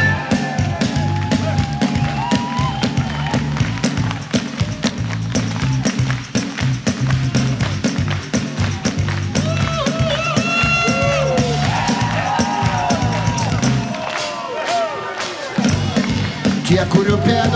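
Live rock band playing an instrumental passage of a song, with a steady rhythmic bass line and a crowd audible along with it. The bass drops out briefly near the end.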